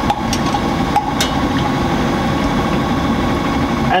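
Laboratory overhead stirrer running steadily, its motor humming as the shaft mixes latex paint in a stainless steel container. A few short clicks in the first second and a half.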